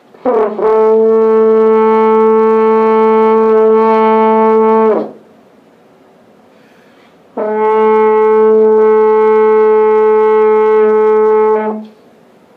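French horn playing two long, steady held notes on the same pitch, each about four and a half seconds, with a pause of about two seconds between them; the first bends up into pitch as it starts. They are demonstration notes of a basic first sound on the horn.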